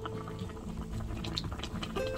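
Tuna soft-tofu kimchi stew (sundubu-jjigae) bubbling at a boil in a pan, a steady run of small pops and blips.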